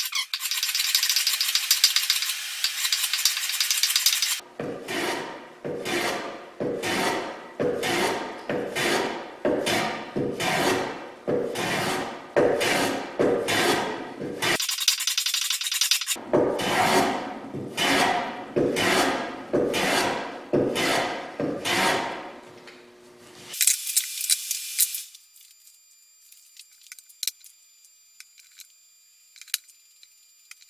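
Hand plane cutting a chamfer along the edge of a pine seat board: a few seconds of continuous hiss, then quick repeated strokes at nearly two a second, a short pause halfway, and more strokes that stop a few seconds before the end.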